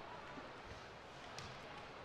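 Faint ice-hockey rink ambience during live play: a steady low haze of crowd and rink noise, with one light click a little past the middle.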